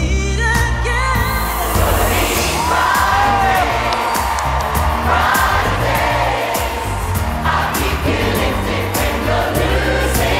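A large choir of several hundred voices singing an uplifting song over a backing track with a steady bass beat. The sound fills out and grows fuller about a second in.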